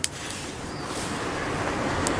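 A car driving past on the road, its engine and tyre noise growing slowly louder. A short sharp click at the very start.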